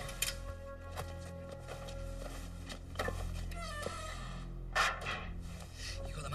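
Film background music with sustained notes, with a few soft knocks over it, the loudest about five seconds in.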